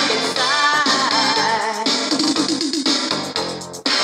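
Old-school dance record played from vinyl on a DJ turntable: music with a steady beat and a melody line, dipping briefly just before the end.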